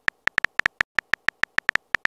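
Texting-app keyboard typing sound effect: a quick, uneven run of short, high beeps, one for each letter typed.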